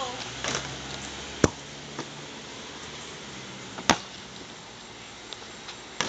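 A basketball striking the hoop and bouncing on hard ground: two sharp hits about two and a half seconds apart, with a fainter knock between them.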